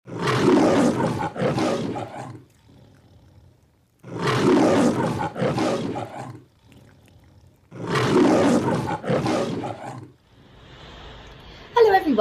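The MGM logo lion roar: a lion roaring three times, each roar about two seconds long and in two pulses, with short pauses between.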